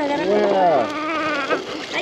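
A wordless, buzzing hum from a person's voice, its pitch rising then falling over most of a second, followed by a shorter, higher hum.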